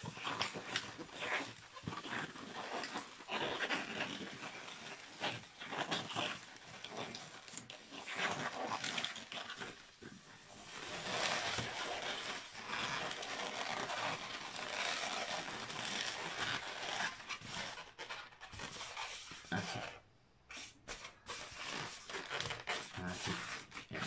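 Latex modelling balloon being rubbed, squeezed and twisted in the hands, an irregular run of rubbery rubbing and scraping noises, briefly quieter near the end.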